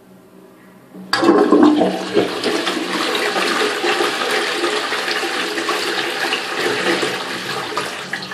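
Stainless steel toilet flushing: a sudden loud rush of water starts about a second in, then a steady wash of water swirling through the pan, easing slightly near the end.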